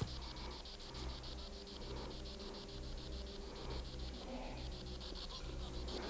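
Faint rapid pulsing buzz, about ten pulses a second, over a low hum: a spirit box's radio sweep leaking from the listener's headphones.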